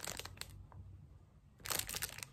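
Clear plastic bag of ornaments crinkling as it is handled: faint rustles and clicks, then a short burst of crinkling near the end.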